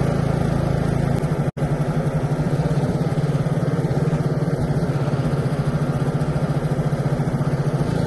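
Engine of a Westwood S1300 ride-on lawn mower running steadily under way, heard from the driver's seat, where it is very loud. The sound cuts out for an instant about a second and a half in, then runs on with a slight pulsing.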